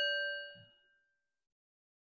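A small metal chime or bell, struck once, rings with a bright, clear tone and fades out within about a second. A soft low knock comes about half a second in.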